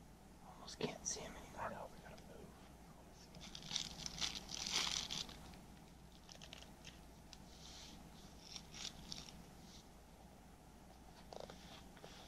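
Faint crinkling of a snack wrapper and crunchy biting and chewing in irregular bursts, busiest a few seconds in.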